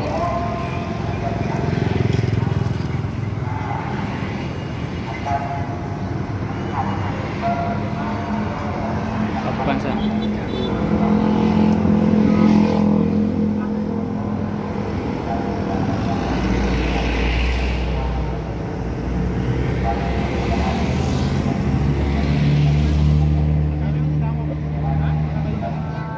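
Road traffic passing at night: motorcycles, a car, and a large bus whose low diesel engine note is heard more strongly in the second half. Voices of people standing by the road are heard in the background.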